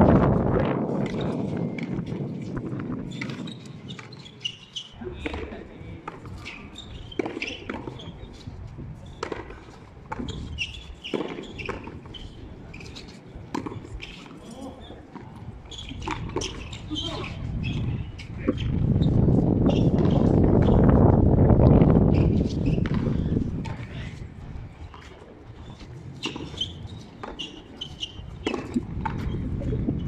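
Frontón a mano rally: a ball slapped by bare hands and smacking off the court wall, heard as sharp irregular knocks throughout. A low rumbling noise swells for a few seconds past the middle.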